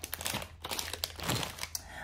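Packaging crinkling and crackling irregularly as handled shopping items are moved about.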